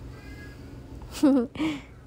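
Two short, loud vocal calls about a second in, the first wavering in pitch and the second shorter and breathier.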